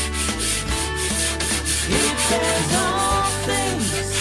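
A cloth rubbing over a glass pane in quick, repeated wiping strokes. Background music with singing plays underneath.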